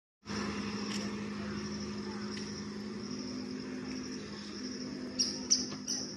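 Outdoor roadside ambience: steady, pulsing insect chirring over a low continuous hum, with three sharp clicks near the end.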